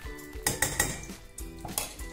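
Steel spoon clinking and scraping against a stainless steel pan and a metal ghee tin as ghee is spooned into the pan: several short, sharp clinks, a cluster about half a second in and more near the end.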